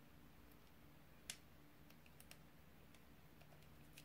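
Near silence with a few faint clicks of long fingernails picking at the stuck protective film on a compact mirror, one slightly louder about a second in, over a faint steady low hum.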